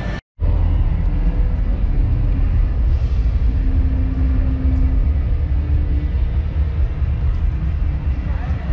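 Low, fluctuating rumble of wind buffeting the camera's microphone outdoors, over a faint hiss of open-air ambience. The sound cuts out for a moment just after the start.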